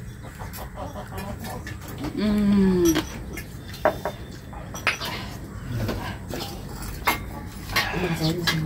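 Spoons and plates clinking in scattered taps as people eat, with one short vocal sound, a held tone that falls at its end, about two seconds in.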